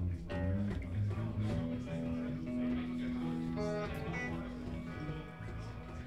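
Live band playing electric guitars and bass on stage, a pulsing low rhythm at first, then long held notes through the middle.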